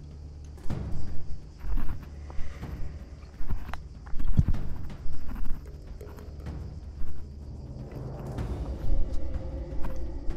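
Footsteps crunching and scraping on loose rock and stony ground on a steep trail, in an irregular rhythm of uneven steps.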